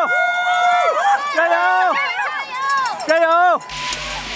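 Spectators yelling cheers, several high, drawn-out shouts overlapping one after another. The shouting cuts off abruptly near the end, leaving a steady rushing noise.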